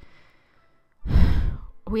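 A person's loud sigh, one breath about a second in, lasting under a second, with the air hitting the microphone close up.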